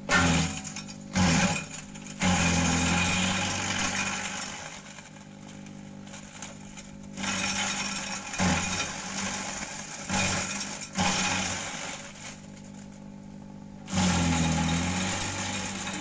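Kelani Kompostha KK100 compost chopper, driven by an electric motor, shredding gliricidia branches. A steady motor hum runs under repeated loud bursts of cutting as branches are fed in, some brief and some lasting a few seconds.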